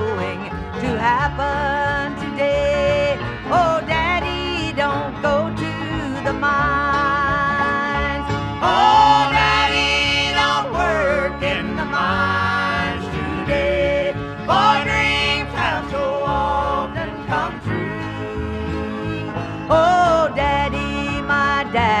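Bluegrass band playing an instrumental break between verses: acoustic guitar and banjo backing with a lead melody of sliding, wavering notes over a steady bass beat.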